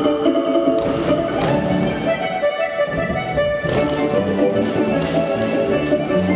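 Russian folk dance music accompanying a stage dance, with a few sharp knocks of the dancers' feet striking the stage.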